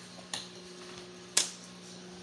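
Two clicks of an eating utensil against a dish: a faint one about a third of a second in and a sharper, louder one about a second later, over a steady low hum.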